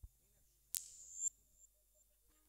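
A brief lull: a faint thump at the start, then a single sharp click about three-quarters of a second in, with a short high ringing that dies away within about half a second.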